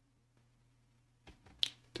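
Quiet room with a faint steady low hum, then a few short sharp clicks in the last part of a second before speech resumes.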